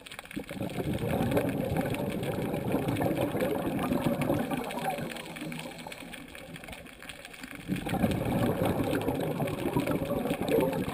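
A scuba diver's exhaled bubbles rattling out of the regulator, heard through the camera housing: a long exhalation, a quieter lull, and then another exhalation starting near the end.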